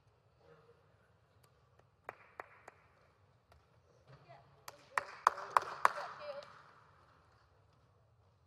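Three isolated sharp clicks about two seconds in. About five seconds in come about four loud hand claps, roughly three a second, over faint voices.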